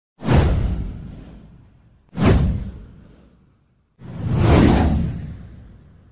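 Three whoosh sound effects from an animated title intro, about two seconds apart. Each swells up and fades away, and the last one builds more slowly.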